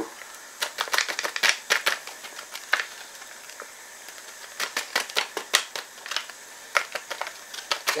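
A foil hop packet crinkling and crackling in irregular bursts as it is shaken and tapped to empty the hops into the brew pot. A faint steady hiss from the wort at a rolling boil runs underneath.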